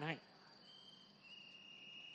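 Faint, steady high-pitched trilling of crickets, two thin tones overlapping, in a pause of a man's amplified speech.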